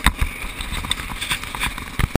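Irregular knocks and wind buffeting on a helmet-mounted camera as a dirt bike rides a bumpy dirt trail, the loudest knock just after the start.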